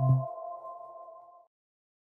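Closing logo jingle: its last note rings on as a steady chord over a short low bass note, fading out and ending about one and a half seconds in.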